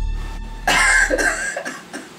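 A low music drone fades out while a person gives one loud, harsh cough about half a second in, followed by a few short, quieter breathy bursts.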